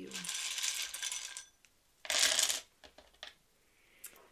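Small wooden letter tiles rattling together for about a second and a half, then a louder clatter of tiles about two seconds in as they spill onto a wooden tabletop, followed by a few single clicks.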